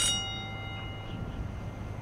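Show-jumping judges' bell struck once, a single clear ring that fades away over about a second and a half, signalling that the rider has been eliminated.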